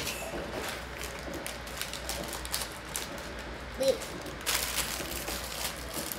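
Handling of a Lego set's packaging: a plastic bag of pieces rustling and crinkling, with many light clicks and taps against the cardboard box and table, and a louder crinkle near the end.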